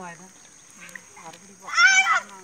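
Speech: voices talking, with a short phrase at the start and a loud, high-pitched call near the end. A faint steady high whine runs underneath.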